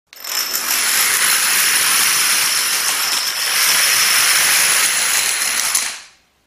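Continuous clatter of a great many dominoes toppling in a chain reaction, fading out near the end.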